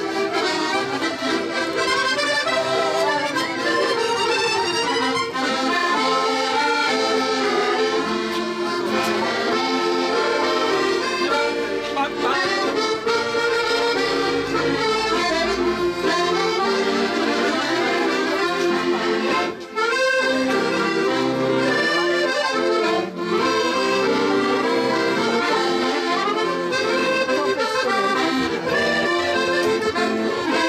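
Several button accordions playing a lively traditional dance tune together, live and amplified.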